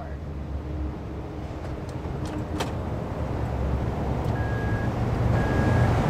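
2011 Honda Odyssey's power sliding door running on its motor, a steady hum that grows louder, with a click a little over two seconds in and two short beeps near the end.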